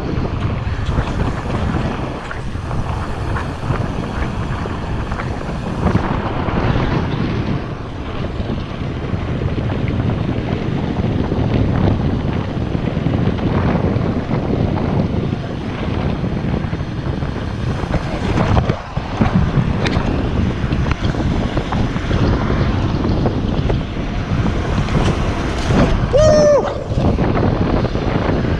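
Wind buffeting an action camera's microphone while riding a BMX bike along a paved street: a steady, low rushing noise with no pauses.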